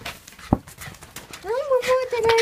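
A Shiba Inu's long whining cry: it rises in pitch about a second and a half in, then holds steady. Before it there is a single sharp knock and a few lighter clicks.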